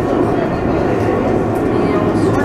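Tram running along its track, heard from inside the vehicle as a steady running noise, with indistinct voices mixed in.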